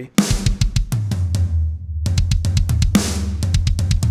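Programmed drum kit from Logic's stock drum library playing kick, snare and cymbals over a steady low bass note. There is a fast run of hits near the end.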